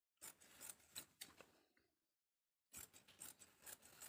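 Large steel tailor's shears cutting through folded cotton fabric: faint, crisp snipping in two runs, with a pause of about a second in the middle.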